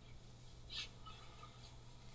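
Near silence: room tone with a steady low hum, and one faint, brief soft sound a little under a second in.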